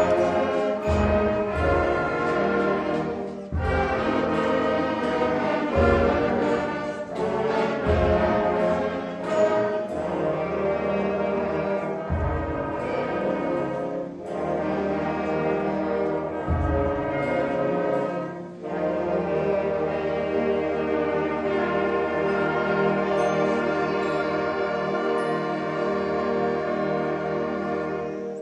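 A seventh-grade concert band of woodwinds and brass playing, with heavy low beats under the music for the first two-thirds. Near the end it settles into a long held chord that stops at the very end, the close of the piece.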